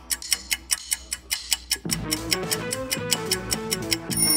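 Ticking clock sound effect marking a quiz countdown timer: fast, even ticks, about five a second, over background music whose melody comes in about halfway through.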